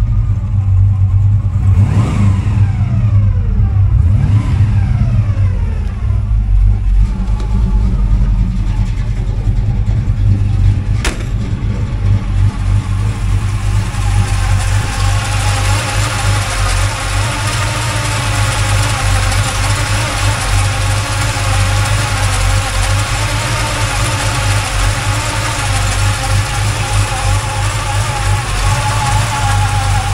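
1957 Chevrolet Bel Air's 350 small-block V8, with headers and Flowmaster dual exhaust, running at idle. Its pitch falls away a few times in the first several seconds, and a single sharp click comes about eleven seconds in. From about a dozen seconds in it is heard at the open engine bay, where a steady whir from the cooling fan and accessory drive rides over the idle.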